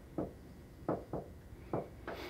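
Four quick taps as a finger presses the push buttons beneath the cable puller's control-panel screen, stepping through the functions with the arrow keys.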